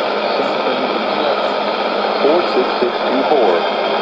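Weak shortwave AM broadcast from the WHRI station on 12015 kHz, heard through a Sony ICF-2001D receiver's speaker: a steady hiss of static with faint spoken announcement buried in it, the speech clearest in the second half.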